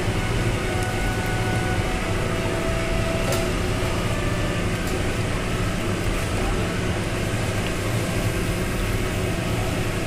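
A steady machine hum with hiss, running evenly throughout, with a few faint clicks.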